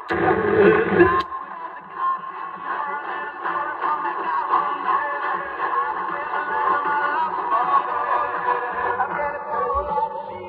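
Music from a medium-wave AM broadcast received on a Sailor 66T solid-state marine receiver and played through its loudspeaker, with the narrow, muffled sound of AM reception. It is louder for the first second, and a sharp click comes about a second in as the tone/filter selector is turned.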